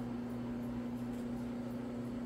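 A 150 lb, 175 rpm rotary floor machine's electric motor running with a steady low hum while it scrubs thick carpet.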